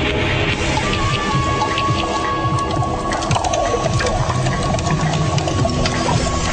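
Rain falling with thunder, a dense steady hiss scattered with sharp drop ticks. A single high held tone enters about a second in and holds.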